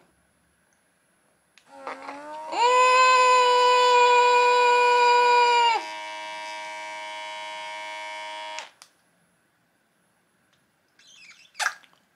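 Electric suction lip-plumping device's pump whining: it spins up about a second and a half in, holds a loud, steady high whine for about three seconds, drops to a quieter steady tone, then cuts off abruptly.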